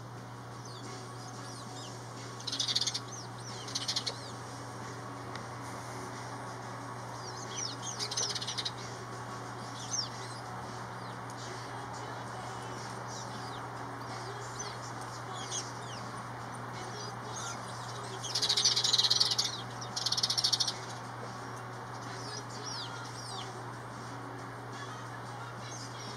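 House sparrows chirping in several short bursts of quick, high chirps, the loudest two about three-quarters of the way through, over a steady low hum.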